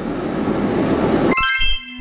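Steady road and engine rumble inside a moving car's cabin, which cuts off suddenly about one and a half seconds in. Background music with held high tones starts in its place.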